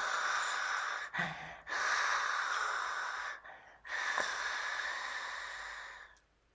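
A man breathing out hard through a wide-open mouth with his tongue stretched far out and down, making a breathy hiss. There are three long exhalations of about one and a half seconds each, with short breaks between them, and the last one fades off.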